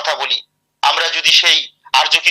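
A man speaking in two short phrases with a brief pause between them, his voice sounding thin and telephone-like as if through an online call.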